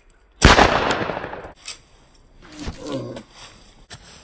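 A single rifle shot about half a second in, its sound trailing off over about a second. Near the end comes a shorter, weaker sound with a voice-like quality.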